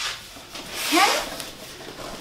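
A large cardboard box scraping and rubbing against a tabletop as it is slid and turned by hand, with a short rising squeak about a second in.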